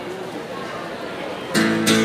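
Acoustic guitar strummed twice near the end, the chords ringing out loud over low crowd chatter, as a busker starts a song.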